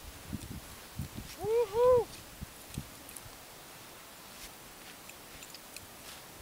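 Footsteps crunching in firm snow, with a short two-note voiced call, rising and falling twice, about a second and a half in.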